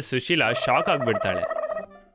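A woman's voice speaking quickly and excitedly over a held background music note, stopping shortly before the end.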